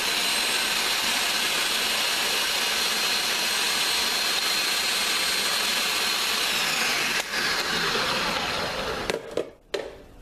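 Electric food processor running steadily, chopping bell peppers, onion, garlic and cilantro into sofrito. It switches off about nine seconds in.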